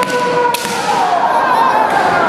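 Kendo fencers' long, held kiai shouts, sliding slowly in pitch, with one sharp crack of a bamboo shinai striking armour about half a second in.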